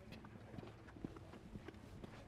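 Near silence: faint room tone with a few soft, irregular clicks.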